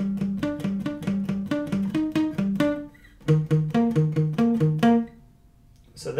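Steel-string acoustic guitar picked with palm muting, playing a quick riff of short, damped single notes on the A and D strings. After a brief pause about three seconds in, the same figure is repeated lower on the neck, its last note left ringing before it fades.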